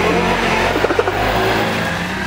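Motor scooter engine pulling away with two riders aboard, a steady low hum that weakens near the end as the scooter moves off.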